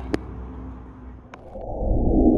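Low rumbling background with a couple of faint clicks, then a rush of noise that swells up sharply over the last half second: a whoosh transition sound effect leading into a logo card.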